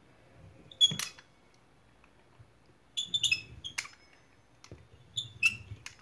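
Pizza cutter wheel rolling through dough on a wooden board, in three bursts of strokes: short clicks and high squeaks from the wheel, with a low rumble of the blade pressing along the board under the later strokes.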